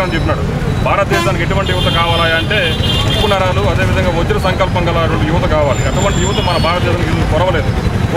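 A man speaking continuously, over a steady low rumble of road traffic.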